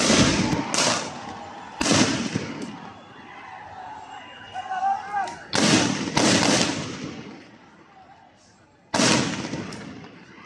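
A run of loud, sharp bangs of police firing on a street protest, about five or six shots spread over the stretch, each with a long echoing tail. Shouting voices are heard between them.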